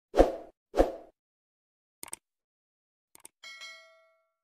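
Subscribe-button animation sound effects. Two quick plops with a deep thump come first, then a double mouse click about two seconds in and another just after three seconds, and a short bell ding that rings and fades near the end.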